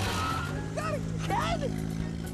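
A small hatchback car driving away, its engine running with a steady low hum. A person's voice cries out twice over it.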